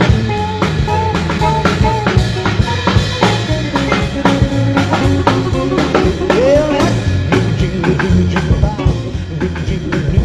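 Rockabilly band playing an instrumental break: electric guitar lead of short melodic notes over a steady drum-kit beat and bass, with one note bent upward about two-thirds of the way through.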